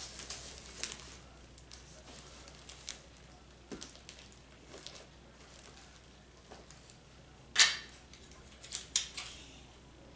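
Gift-basket items being handled and arranged in a plastic basket: faint rustling and light knocks of cardboard boxes and plastic. A louder, short, sharp rustle comes about three quarters of the way through, followed by two smaller ones.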